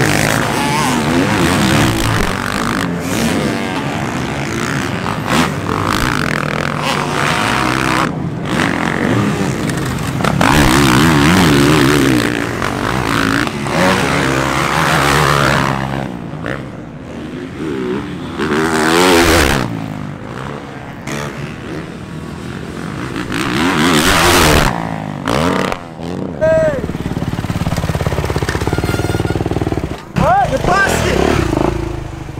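Several motocross dirt bike engines racing, revving up and down in pitch as the riders accelerate and back off, with abrupt changes in the engine sound from one shot to the next.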